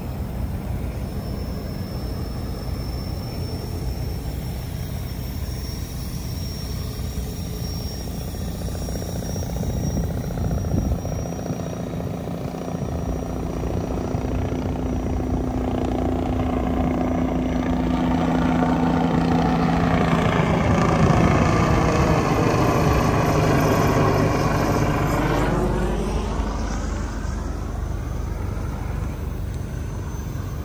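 Steady low engine hum, then an engine passing by. Its several pitches fall together as it goes past, louder about two-thirds of the way through, then fading.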